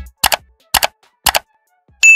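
End-card sound effects: the outro music stops on a low hit, then three sharp double clicks come about half a second apart as the like, share and subscribe buttons animate on screen.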